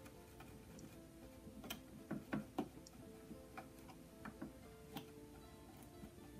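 Faint background guitar music under a handful of light, irregular clicks. The clicks come from a stiletto tool and fingers working frayed cotton sash-cord ends together under a sewing machine's presser foot.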